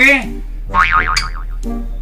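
Cartoon-style comic 'boing' sound effect: a short wobbling tone that warbles up and down for about half a second, about a second in, over a steady background music bed.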